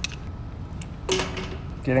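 A few light metal clicks and a clink as channel-lock pliers are set onto a brass lock cylinder in a door, one clink about a second in ringing briefly.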